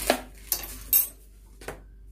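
Steel kitchen utensils clinking: four sharp metallic clinks with a short ring, the loudest near the start and about a second in.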